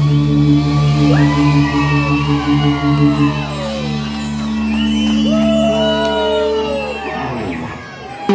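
Live ska-punk band holding a long sustained chord, with high sliding notes over it. The chord dies away near the end.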